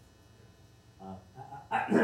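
A man's hesitant 'uh, I, I' at the start of an answer, with a loud rustle and bump near the end as a handheld microphone is taken in hand.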